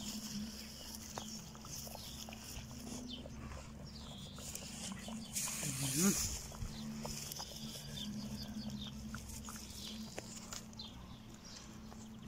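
Soup boiling in a cast-iron cauldron over a wood fire, with faint crackles and bubbling over a steady low hum. A short rising-and-falling animal call sounds about six seconds in.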